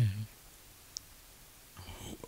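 A man's voice breaks off into a short pause, with one faint click about a second in, before his speech starts again at the end.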